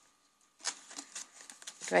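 Paper rustling and sliding as a paper tag is handled and drawn out of a pocket in a handmade paper junk journal, a quick run of crisp rustles starting about half a second in. A few spoken words come right at the end.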